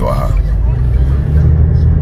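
Low, steady rumble of a car heard from inside the cabin: engine and road noise, swelling a little in the second half.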